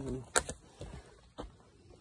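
Footsteps on a forest trail of packed dirt, roots and dry leaf litter: a few short scuffs and knocks about half a second apart, with one sharp click about a third of a second in the loudest of them.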